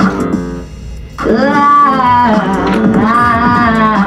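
Music: a voice holding long, gliding wordless notes, with a brief lull about half a second in before the singing resumes.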